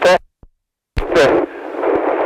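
A man's voice coming over a radio link. It is cut to dead silence for under a second, then the voice and the link's steady low hum come back.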